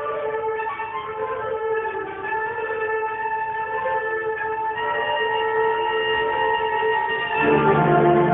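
Marching band recording playing slow, sustained chords that gradually build in loudness. About seven and a half seconds in, lower parts come in and the sound becomes fuller and louder.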